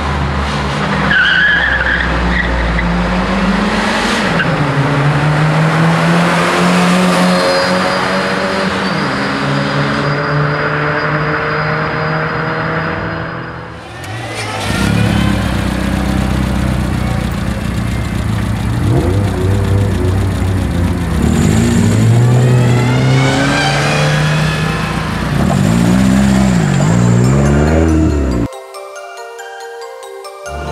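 Car engines revving hard with tyres squealing, in two stretches broken by a brief dip about halfway through. Near the end the revs swing up and down several times in quick succession.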